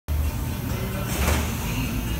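Automatic screen-printing press running, with a steady low machine rumble and a short hiss a little past a second in. Music plays faintly in the background.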